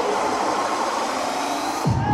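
Psytrance played loud over a PA: a hissing white-noise wash with the bass stripped out, typical of a breakdown build-up, then near the end the noise cuts off as a deep kick drum comes back in for the drop.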